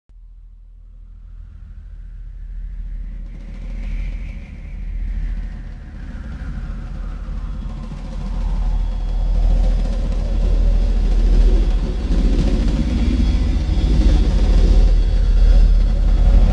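A deep, steady low rumble that builds gradually louder, with a wash of higher noise swelling above it: an opening drone in a trailer.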